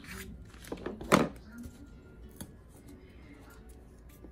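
Scissors cutting black construction paper in a few short snips, the loudest about a second in, followed by a single sharp click. Faint music and voices sit underneath.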